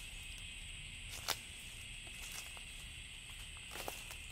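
Faint, steady high-pitched outdoor background hiss, with a couple of soft ticks, about a second in and near the end.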